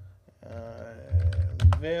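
Computer keyboard keystrokes typing a short command, a few clicks and thuds, with a man's voice speaking over them from about half a second in.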